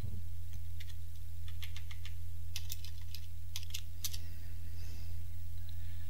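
Keys being typed on a computer keyboard in short, irregular clicks, over a steady low electrical hum.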